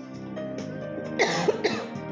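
A woman coughs twice, about a second in, over soft instrumental backing music.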